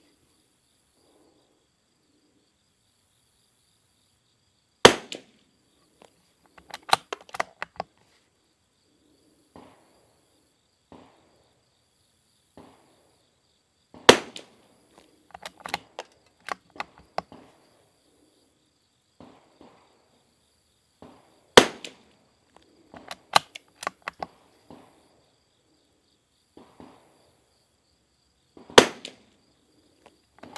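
CZ455 Varmint .22 rimfire rifle firing RWS R50 ammunition from the bench: four single shots, about seven to eight seconds apart. Quieter clicks and knocks come between the shots.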